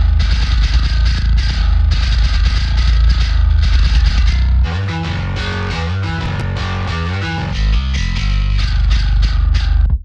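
Metal bass guitar track playing back a riff through a stereo-widening plugin. About five seconds in the sound changes to less deep low end and clearly stepping notes as playback switches to the reference bass stem, and it fills out again near the end.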